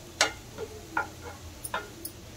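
Wooden spatula knocking against a nonstick frying pan while stirring grated pumpkin: about five sharp knocks, the first the loudest.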